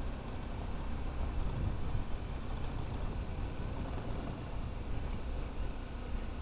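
BMW G 310 GS single-cylinder motorcycle riding down a gravel road: a steady low rumble of engine and tyres under wind rush on the microphone.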